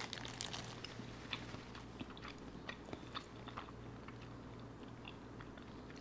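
Faint close-up chewing of a mouthful of soft, doughy food: small wet clicks and smacks, a few a second, thinning out after about four seconds.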